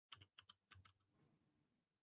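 Faint computer keyboard keystrokes: about five quick clicks in the first second, then a faint low rustle that fades out.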